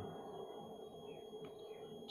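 Faint room tone: a low background hiss with a steady hum and a thin high tone under it, and no other sound.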